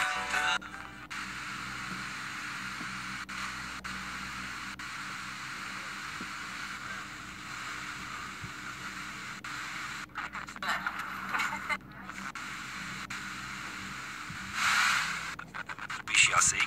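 FM radio static from a Sony Ericsson mobile phone's built-in FM tuner being stepped through empty frequencies between stations, a steady hiss with short dropouts as each step is taken. A louder burst of sound, likely a weak station, comes in near the end.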